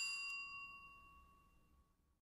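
The song's final struck, bell-like metallic note ringing out alone and fading away over under two seconds, as the recording ends.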